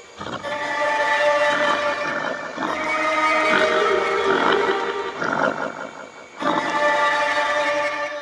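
Beatless breakdown of a drum and bass track: layered, held synth tones in phrases of a few seconds, with no drums or bass under them.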